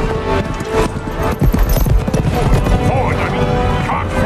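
Hooves of several horses clattering on the ground, thickest through the middle, under an orchestral film score.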